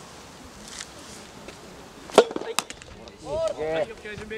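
A racket strikes a soft tennis ball with one sharp crack about two seconds in, followed by a couple of lighter ticks, then a short pitched shout from a player near the end.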